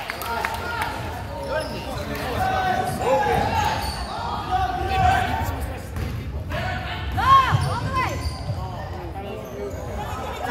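A basketball being dribbled on a hardwood gym floor, with sneakers squeaking as players run and indistinct voices echoing in the gym. The loudest squeaks come about seven seconds in.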